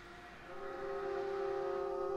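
Bowed violin holding a sustained chord of several steady pitches. It swells in about half a second in and keeps growing louder, out of a faint held tone.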